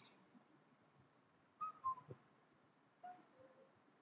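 Near silence with a few faint whistled notes: a short group about halfway through that steps down in pitch, and another lower, falling pair near the end.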